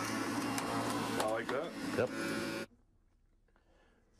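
Electric juicer running as vegetables are pushed down its feed chute. It is switched off about two-thirds of the way in, and its steady hum cuts off suddenly.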